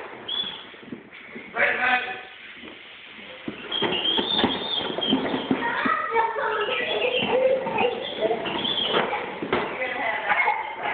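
A toddler makes motor "vroom" noises with his voice, a wavering, pitched drone that starts a few seconds in and keeps going. The hard plastic wheels of his ride-on toy motorcycle knock and clatter on a tile floor.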